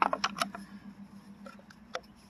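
A quick run of light plastic clicks and taps as a roof-rack crossbar's foot is gripped and moved on the roof rail, then faint handling and a single click near the end.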